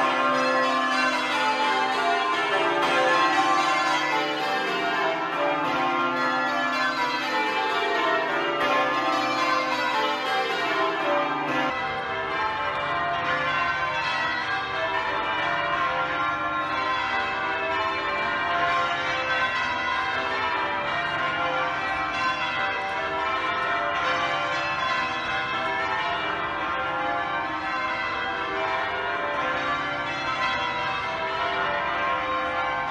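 Change ringing on the twelve bells of Buckfast Abbey (tenor 41-1-3 cwt, in C): rapid, continuous descending runs of bell strikes. About twelve seconds in, the sound cuts to a more distant take, heard from outside the tower.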